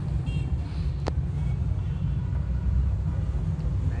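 Steady low rumble inside a car's cabin, with one sharp click about a second in.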